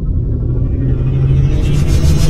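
Cinematic logo-reveal sound design: a deep rumble over a steady low drone, with a rising hiss swelling in over the second half.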